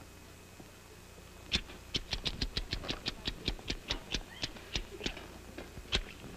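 Rapid run of sharp clicks, about five or six a second, starting about a second and a half in and stopping near five seconds: the clack of pool balls colliding for a pantomimed pool shot.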